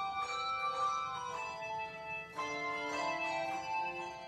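Handbell choir ringing a carol arrangement: chords of several bells struck together and left to ring, a new chord about every second, with a fresh, lower chord coming in a little past halfway.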